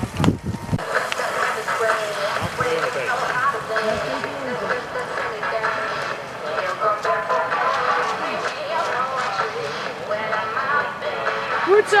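Music with a voice over a public-address loudspeaker, thin and with little bass.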